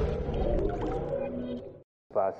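Tail end of a channel's electronic intro jingle, a swirling synth sound that fades away and drops to silence shortly before the end.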